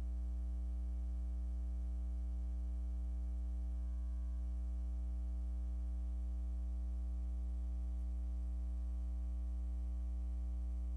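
Steady low electrical mains hum with a buzz of overtones above it and no speech, typical of a ground-loop or sound-system hum left on the recording while the voice is missing.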